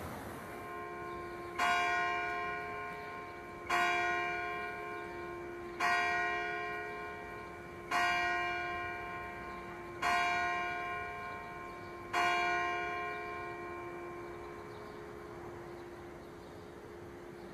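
A church tower bell tolling six times, about two seconds apart, each stroke ringing out and fading slowly; its low hum lingers after the last stroke.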